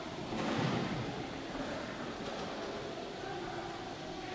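Quiet church interior: a steady low background hiss with a faint murmur, and a brief louder noise about half a second in.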